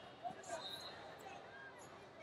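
Faint hubbub of a large indoor sports arena: distant voices and short squeaks echoing around the hall, with a small knock about a quarter second in and a brief high tone about half a second in.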